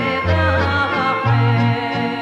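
A woman singing a Macedonian folk song with a small band of acoustic guitar and accordion, her voice wavering and gliding over bass notes that pulse about once a second.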